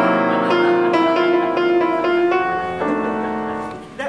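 Grand piano playing a string of loud chords, about two a second, that ring out and fade near the end.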